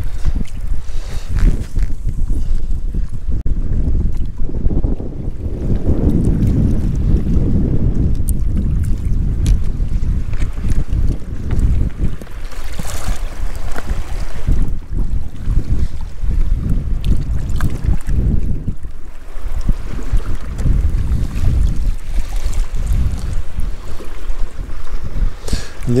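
Wind buffeting the microphone, a loud gusting rumble that rises and falls without stopping.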